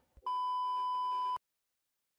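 A single steady electronic bleep tone lasting about a second, starting and stopping abruptly, followed by dead silence.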